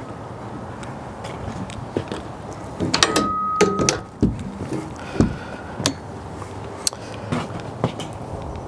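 Steel cabinet smoker door being swung shut and latched: metal clanks with a brief squeak about three seconds in, amid scattered clicks, then a couple of dull thumps.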